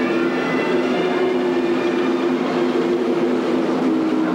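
A steady, even drone of several sustained low tones over a rumbling hiss, mechanical in character.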